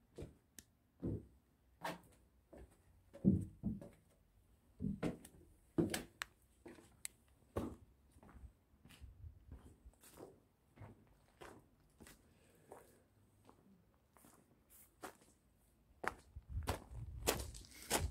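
Footsteps on wooden planks and rubble, irregular, about one or two a second, with some heavier thuds among them.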